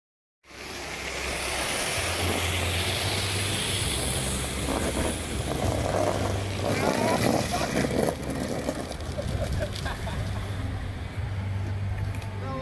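Drift trike rolling fast down asphalt, its hard plastic rear wheels giving a steady rumble and hiss, with voices calling out partway through.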